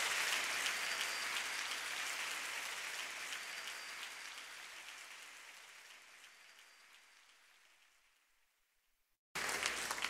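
Audience applause fading out steadily until it is gone, about seven or eight seconds in. Just before the end the next recording cuts in abruptly.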